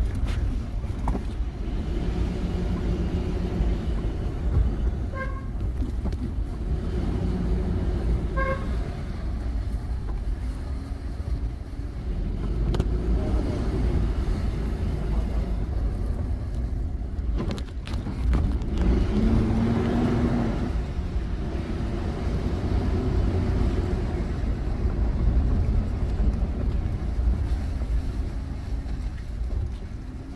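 Car driving slowly, heard from inside the cabin: a steady low engine and tyre rumble, with two short high beeps about five and eight seconds in.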